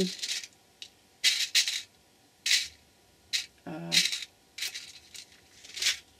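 Small metal eyelets clicking and rattling against a clear plastic compartment box as fingers pick through them, in about six short bursts with quiet gaps between.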